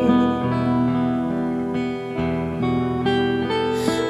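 Acoustic guitar picking slow, ringing notes in a Renaissance-style folk song, an instrumental bar with no singing.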